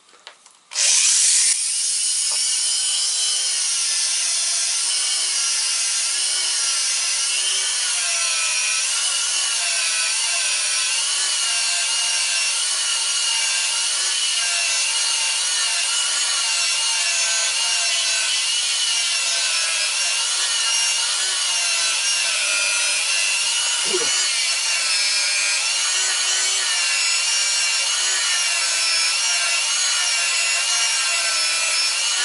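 Handheld mini rotary drill starting about a second in and then running steadily, its high whine wavering slightly in pitch. It is polishing a copper-nickel coin with GOI paste.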